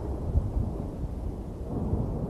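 Low, rolling thunder rumbling from a storm, with one swell about a third of a second in, then dying down.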